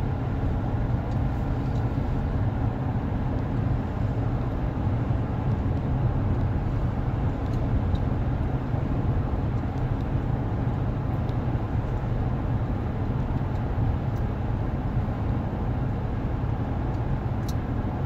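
Steady low drone of road and engine noise inside the cab of a 2018 GMC Sierra 1500 with the 6.2-litre V8, cruising at highway speed while towing an 8,000 lb travel trailer.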